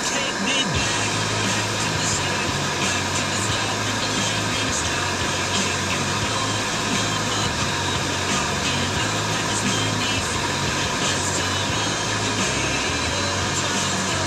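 Car radio playing a song with a vocal, heard inside the car, with a steady bass line.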